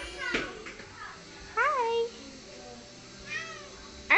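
A domestic cat meowing: a short call at the start, one clear meow that rises and falls about one and a half seconds in, and a fainter meow near the end.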